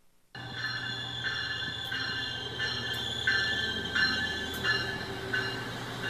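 SMART diesel multiple-unit passenger train pulling into a station platform. It runs with a steady low hum and high tones that pulse about every two-thirds of a second, starting a moment in, with a few sharp clicks.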